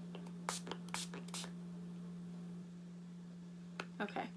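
A pump spray bottle of botanical after-sun face mist being spritzed three times in quick succession, short hissy puffs about half a second apart, over a steady low hum.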